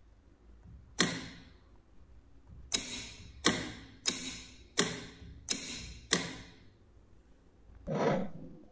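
Solenoid door lock and its relay module clicking as the lock is switched on and off: seven sharp clicks, the first about a second in, then six more about two-thirds of a second apart.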